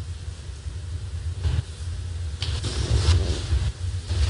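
Low, steady rumble on the courtroom microphone feed, with faint rustling from a little past halfway.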